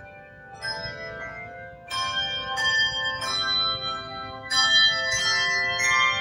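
Handbell choir ringing brass handbells in a piece of music, each struck chord ringing on into the next. It starts soft and grows louder about two seconds in, then louder again after about four and a half seconds.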